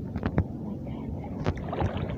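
Wading through shallow seawater: sloshing water with a few sharp knocks, the clearest near the start and about one and a half seconds in.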